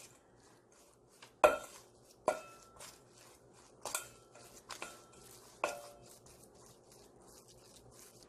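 Metal spoon stirring a stiff chili-paste seasoning in a stainless steel bowl: about five sharp clinks of spoon on bowl, each with a brief metallic ring, roughly a second apart, with soft scraping between.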